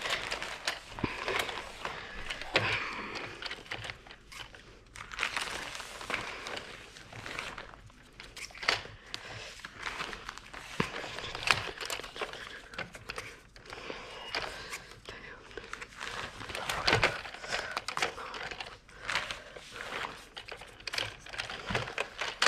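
Rustling and crinkling handling noise with many scattered light clicks and knocks, irregular throughout, with no steady tone or rhythm.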